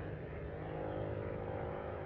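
Steady low hum and hiss: the background noise of an old 1990 speech recording, with no other sound standing out.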